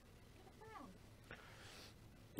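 Near silence: room tone, with a faint, short pitched sound about two-thirds of a second in and a faint click a little after one second.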